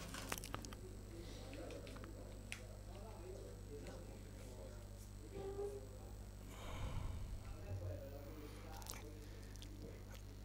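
Faint, sharp clicks of billiard balls as a shot is played: the cue tip striking the cue ball and balls knocking together. Beneath them a low steady hum and faint voices.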